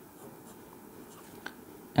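Ballpoint pen drawing lines on paper: a faint scratching, with one small tick about one and a half seconds in.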